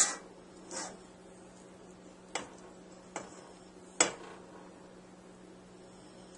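A spatula stirring thick melted chocolate in a stainless steel double-boiler bowl, knocking lightly against the bowl a few times, the loudest knock about four seconds in. A faint steady hum runs underneath.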